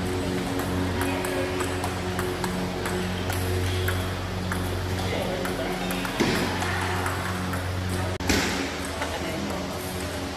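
Table tennis balls clicking off paddles and the table during a rally, repeated sharp pings over background music with steady sustained low notes.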